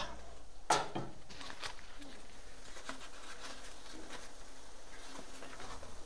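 A paella pan being lifted off a wood fire: one sharp metal knock under a second in and a few lighter clicks just after, then a faint, steady crackle from the hot pan and embers.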